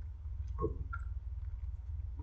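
Faint mouth sounds of a man chewing food, a few soft clicks and a brief hesitant "a", over a steady low hum.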